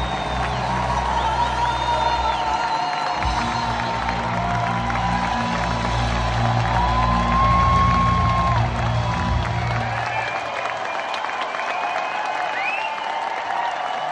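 Live band holding low closing notes under an audience applauding, cheering and whooping; the band stops about ten seconds in while the applause and cheers carry on.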